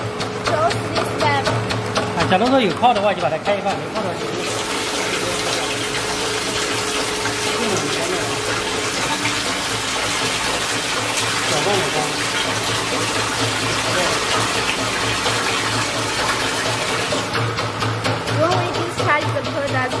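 Liquid rushing into a stainless-steel perfume mixing tank, a steady splashing hiss that starts about four seconds in and stops about three seconds before the end, over a low machine hum.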